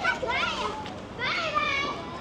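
Children's voices at play on a playground: two high-pitched calls, a short one about half a second in and a longer one in the second half that falls slightly in pitch.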